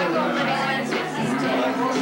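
Several voices singing into handheld microphones from lyric sheets over music, with party chatter underneath.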